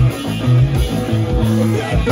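Live math-rock band playing loud: distorted electric guitars and drum kit, with choppy low notes in a stop-start rhythm.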